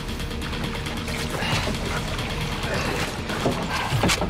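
Documentary background music with sustained low held tones.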